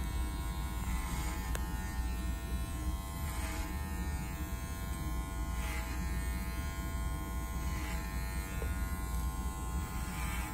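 Electric hair clipper running without a guard, a steady buzz that swells briefly about every two seconds as the blade is drawn through the hair.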